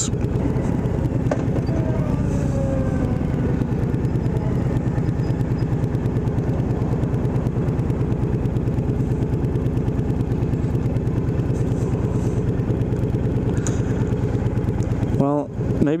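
Honda VTX 1300R's V-twin engine idling steadily, with a fast, even rhythmic pulse heard close up from the rider's seat.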